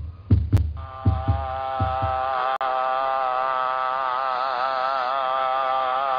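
Heartbeat sound effect: three low double thumps in quick pairs, fading out about two seconds in. A long held musical note comes in about a second in and carries on steadily, wavering slightly in pitch.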